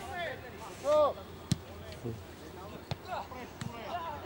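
A football being kicked on the pitch: one sharp thud about one and a half seconds in, then two fainter thuds near the end, with a player's short shout just before the first.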